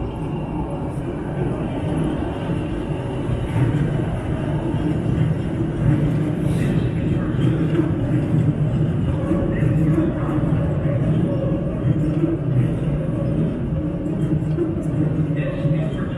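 Elevated metro train running around a curve on steel elevated track, a steady loud rumble with a low hum from its cars and wheels.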